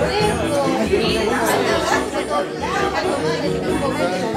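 Many people talking at once in a crowded room: overlapping conversation at a steady, fairly loud level.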